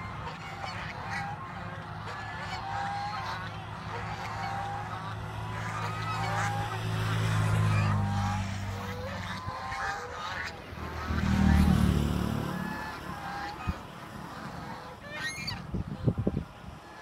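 A flock of domestic geese honking and calling on the water, with many short calls overlapping throughout. A low droning hum swells up loud twice, near the middle and again about three-quarters through.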